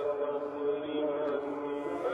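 A muezzin's voice singing the dawn call to prayer (Fajr adhan), holding one long wavering note, carried over the mosque's loudspeakers.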